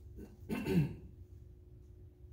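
A man clearing his throat once, a short throaty sound with a falling pitch about half a second in.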